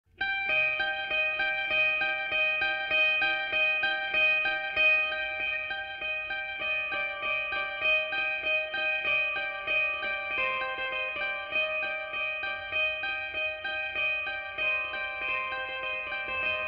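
Instrumental opening of a song: an effects-treated guitar picking a steady repeating figure of quick notes. The chord changes about ten seconds in and again near the end.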